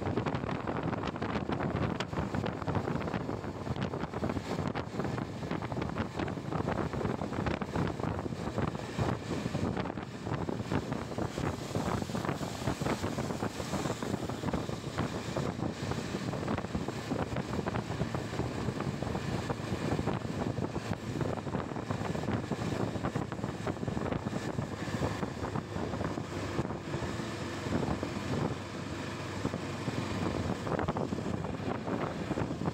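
Steady wind rushing over the microphone of a Yezdi Adventure motorcycle ridden at about 50–80 km/h on a wet road, with engine and tyre noise blended underneath.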